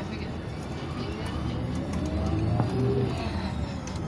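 Tour bus driving, heard from inside the cabin: a steady engine and road rumble, swelling a little midway, with a faint tone that rises and then falls in pitch.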